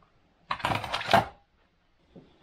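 A plastic Scalextric slot car being set down into its set's moulded box insert: a short clatter of plastic knocks, lasting under a second and loudest at the end.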